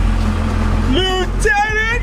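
A steady low rumble from the 2002 Chevy Camaro Z28's 5.7-litre V8 idling at close range, with a voice over it in the second half.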